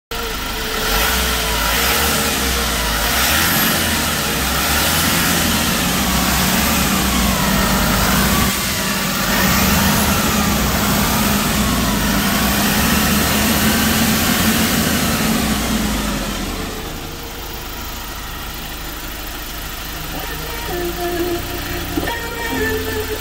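Kia Bongo III truck's engine running steadily, heard at close range in the open engine bay, becoming quieter about three-quarters of the way through.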